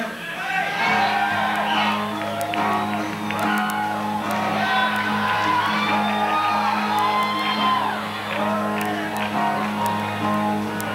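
Audience shouting and whooping over a steady low note held by the band's amplified instruments, which comes in about a second in.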